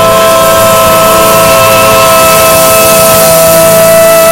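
Live worship music: singers and band holding one long, steady chord.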